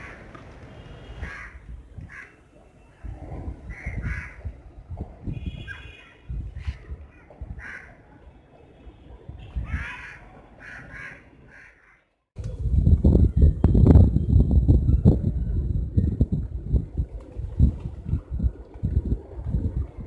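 Birds calling in short, repeated, harsh calls over a low rumble of wind on the microphone. About twelve seconds in the sound cuts out briefly, then a much louder low buffeting takes over among a flock of rock pigeons, some of them taking off.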